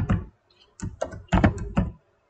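Typing on a computer keyboard: a quick run of keystrokes, a pause of about half a second, then another quick run of keystrokes.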